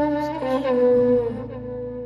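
Violin playing a slow melody of long held notes that step to a new pitch a few times, over a low sustained accompaniment.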